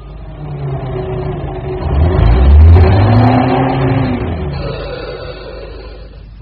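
A motor vehicle engine swelling to its loudest about halfway through, the pitch rising and easing back, then fading away, like a car driving past.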